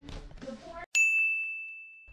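A single bright ding: a chime-like tone that starts sharply about a second in and rings down steadily over the next second, after a moment of soft rustling.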